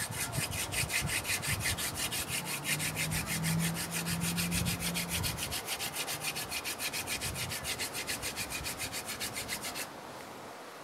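Hand-drill friction fire: a mullein spindle twirled back and forth between the palms, its tip grinding into a willow hearth board. A fast, even rasping, about eight strokes a second, which stops abruptly.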